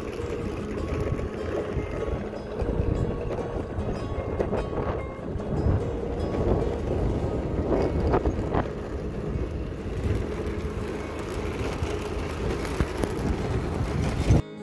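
Continuous wind rush on the microphone with road and vehicle noise while riding along a road.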